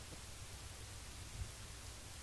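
Faint steady hiss with a low rumble underneath; no distinct sound stands out.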